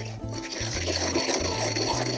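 Pestle grinding coarse salt, rosemary needles and olive oil into a paste in a granite mortar, a steady wet grinding, over soft background music.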